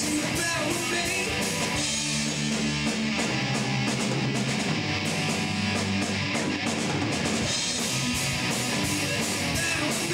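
Live rock band playing: electric guitars, bass guitar and drum kit together at a steady loud level, with a regular beat.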